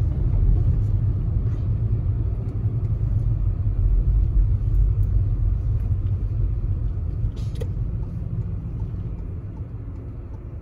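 Car cabin road noise while driving on a snowy, slushy road: a steady low rumble of tyres and engine that eases off over the last couple of seconds, with a brief click about seven and a half seconds in.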